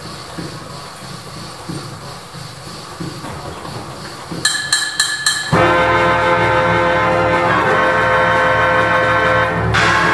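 Weber Maestro orchestrion, a pneumatic paper-roll orchestrion, starting up. A low mechanical rumble for about four seconds, then a few short chords about four and a half seconds in, then loud full music from its pipes a second later.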